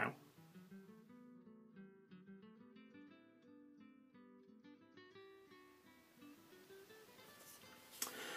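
Faint background music: acoustic guitar playing a run of plucked notes.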